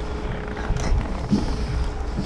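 Wind buffeting the microphone of a handheld camera outdoors, a continuous low rumble mixed with handling noise. A faint steady hum sounds underneath and stops about a second in.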